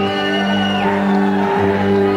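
Rock band playing live: slow, held chords that change about every second.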